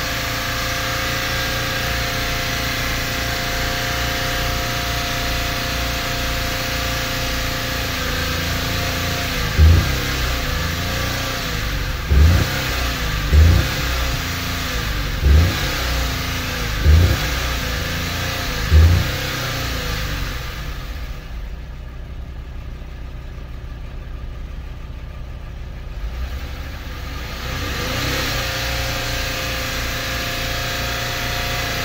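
A 2007 Buick Lucerne's engine is held at high revs while being run to destruction. From about ten seconds in, six loud heavy thumps come a second or two apart, the engine note wavering around them. Later the sound drops off for several seconds, then picks up again.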